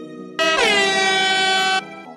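An air-horn sound effect marking the end of a timed exercise interval. It starts about half a second in with a quick downward slide in pitch, holds steady for over a second and cuts off suddenly, over electronic background music.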